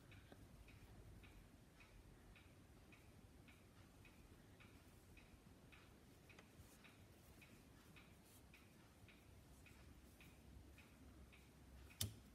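Near silence, with faint, evenly spaced ticks about twice a second.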